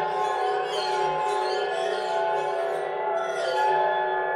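Music of sustained, ringing bell-like tones, held and overlapping, with soft new strikes about every half second.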